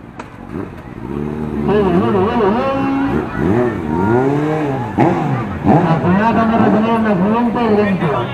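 Motorcycle engines revving, their pitch rising and falling over and over as the throttle is opened and closed, louder from about a second in.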